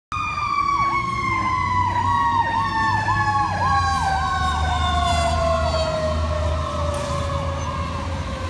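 Fire engine responding with two sirens at once: one long tone that slides slowly down in pitch, and a second siren that cycles down and back up about twice a second, over the truck's low engine rumble.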